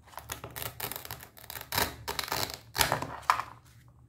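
A plastic toy knife sawing through a play watermelon and its velcro-joined halves pulling apart: a run of rasping rips and plastic clicks, loudest in the second half.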